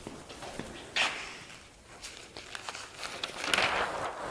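Footsteps on a hard studio floor, a scattering of short taps, then a large sheet of paper rustling as it is handled near the end.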